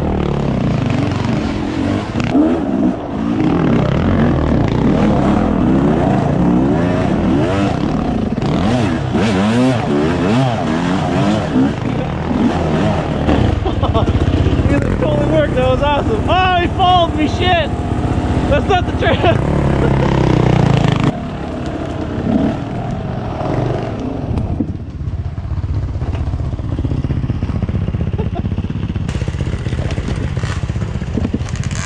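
Dirt bike engine running and being revved on a trail, its pitch rising and falling with the throttle, with a stretch of harder revving a little past halfway; the engine note gets quieter about two-thirds of the way through.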